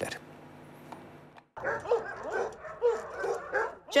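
Several dogs barking, yipping and whining together, with many overlapping calls, starting about one and a half seconds in after a faint hum and a brief silence.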